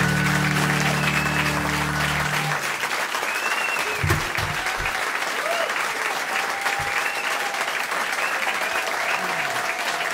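Audience applauding, with a few whoops, as the final acoustic guitar chord rings out and fades about two seconds in. A few low thumps come around four to five seconds in.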